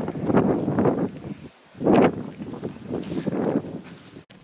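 Wind gusting on the microphone in uneven surges, the strongest about halfway through.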